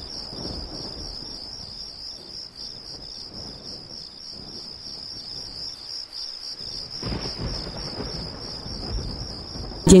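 Crickets trilling steadily in one high, wavering tone over a faint low rumble of thunder, the rumble swelling about seven seconds in.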